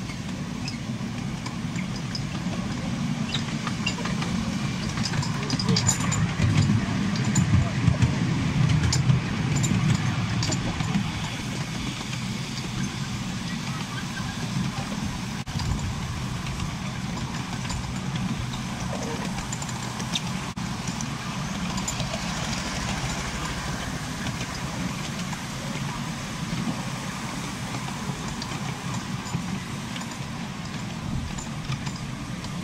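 Riding on a 7¼-inch gauge miniature railway train: the carriages' wheels rumble on the rails and the locomotive's engine runs. The rumble is loudest a few seconds in, then settles to a steady level.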